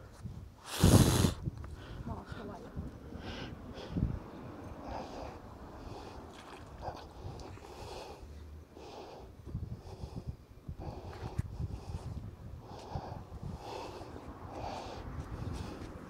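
Gloved hands hauling in a magnet-fishing rope hand over hand: a low rumble of handling noise with short faint scuffs and rustles as the rope is pulled. A loud, sudden rustle or knock comes about a second in.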